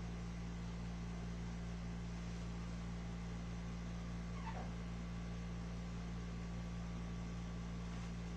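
Room tone: a steady low electrical hum in an empty room, with one faint, brief sound falling in pitch about halfway through.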